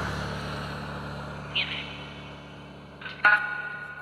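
A passing car fading into the distance, its road noise dying away over about three seconds. Near the end comes a short, sharp sound followed by a ringing tone.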